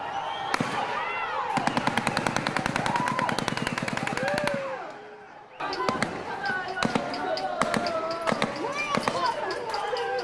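Crowd shouting and screaming amid police gunfire. A fast, even run of sharp cracks lasts about three seconds, then after a brief lull scattered single bangs ring out over continued shouting.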